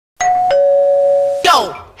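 An electronic two-note ding-dong chime: a short higher note, then a lower note held steady for about a second without fading. A voice starts near the end.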